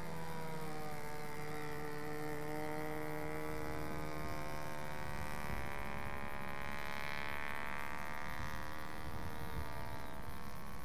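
Radio-controlled Gypsy Moth model biplane's motor running steadily in flight, a single steady note whose pitch shifts slightly as the model flies.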